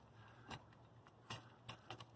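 A few faint clicks from a hand-held brake-bleeder vacuum pump being squeezed on the hose to the EGR valve, with no vacuum building on the line.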